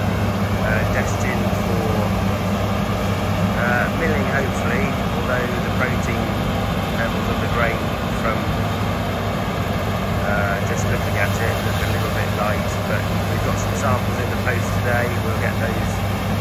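Combine harvester cutting wheat, its engine giving a steady low drone under a constant rushing noise, with faint short chirps scattered through.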